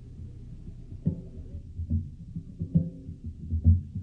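Drums beaten in an irregular run of deep, ringing strikes, starting about a second in and growing louder: talking drums, which are probably announcing the visitors' arrival. A low steady hum lies under them.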